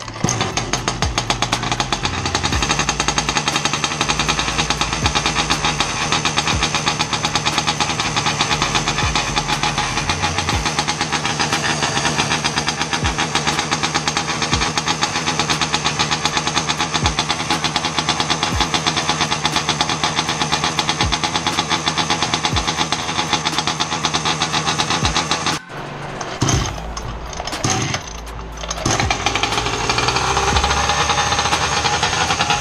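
Rovan 71cc two-stroke engine in a large-scale RC truck running steadily with a rapid, even beat while its carburettor is being tuned; the owner cannot get it past about 13,000 rpm and puts this down to tuning. The sound cuts off abruptly near the end, and a quieter, uneven stretch follows.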